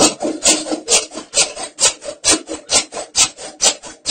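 Plastic sheeting rubbed and rustled in quick repeated strokes, about three to four a second.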